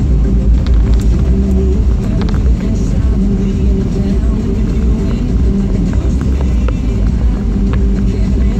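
Music playing from a car radio inside the cabin of a moving car, over a steady low rumble of road and engine noise.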